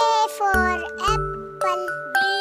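Children's alphabet song: a bright, jingly keyboard tune with a bass line coming in about half a second in, and a child-like voice singing short words over it.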